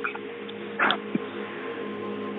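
Steady ambient meditation music with held, singing-bowl-like tones, and a brief sharp noise a little under a second in.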